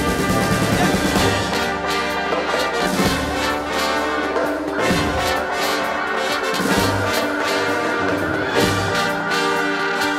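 Instrumental break of a band playing with a symphony orchestra. Two trumpets lead the melody over a drum kit with cymbals, and the orchestra's woodwinds and horns fill in beneath them.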